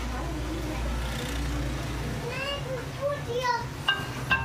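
A young child's short wordless vocal sounds, a few quick rising-and-falling calls in the second half, over a steady low hum.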